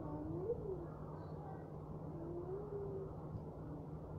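A steady low hum with two faint pitched, voice-like glides over it: one rising and falling near the start, a slower, flatter one in the middle.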